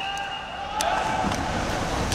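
Backstroke swimmers dropping into the pool one after another, a rush of splashing water that builds in the second half. A long steady tone trails off at the start.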